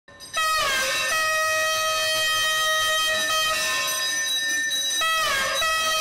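Conch shell (shankha) blown in one long held note. The pitch dips downward just after it starts and again about five seconds in.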